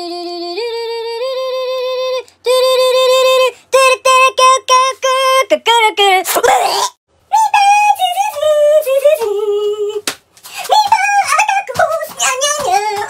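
A high, wordless voice making sung, humming-like tones. It opens with long held notes that step up in pitch, then breaks into shorter, choppier notes that bend up and down. About six and a half seconds in there is a brief noisy burst with no clear pitch.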